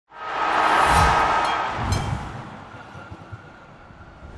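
Short intro music sting: a swelling whoosh with two deep hits, about one and two seconds in, then fading out.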